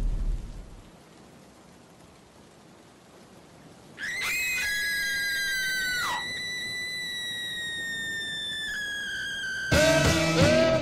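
After a few seconds of quiet, two women scream together in long, high, held screams. One breaks off with a falling pitch, and the other holds on, slowly sinking in pitch. A man's lower-pitched scream cuts in near the end.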